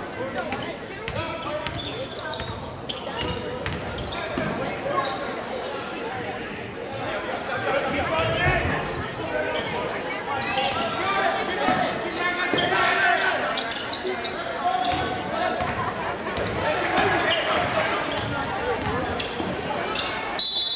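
A basketball bouncing on a hardwood gym floor during play, with short knocks scattered through, over a steady bed of crowd and player voices.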